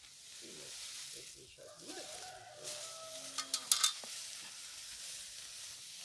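A quick cluster of sharp knocks a little past the middle: a machete chopping a cassava stem into pieces for planting. A steady hiss runs underneath.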